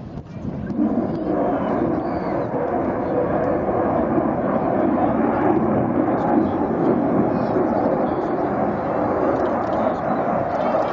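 Jet noise from a MiG-29 fighter's twin turbofan engines in a low display pass. It swells in about a second in and then holds as a steady roar.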